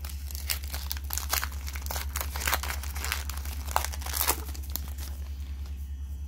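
Foil Pokémon booster pack being torn open and crinkled by hand: a quick run of crackles and small rips that thins out after about four seconds.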